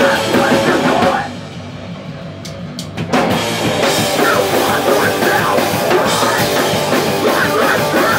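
Live hardcore punk band playing loud, with electric guitar, bass and a drum kit. About a second in the band drops back to a quieter, low stretch with a few sharp clicks, then comes back in at full volume about three seconds in.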